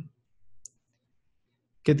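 A single faint computer-mouse click about two-thirds of a second in, with near silence around it; narration stops at the start and resumes near the end.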